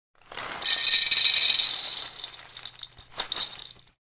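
Designed logo-reveal sound effect: a hissing, crackling rush swells up, is brightest for about a second and a half, then thins into scattered clicks and rattles, with a last flurry near the end before it stops.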